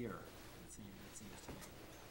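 A man's voice ends a word, then faint room tone with a few light pen-on-paper scratches and a soft click about one and a half seconds in.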